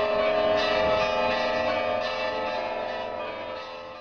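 Church bells ringing, struck several times over a long sustained ring, fading out toward the end.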